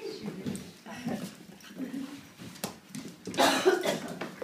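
Two puppies play-fighting, making short dog vocal sounds, with one louder sound near the end.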